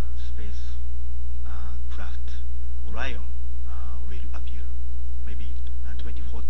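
Loud, steady electrical mains hum, with a man's voice speaking faintly into a handheld microphone over it.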